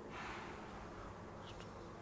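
Marker pen writing on a whiteboard: a faint scratchy stroke through the first second, then two quick short strokes about one and a half seconds in.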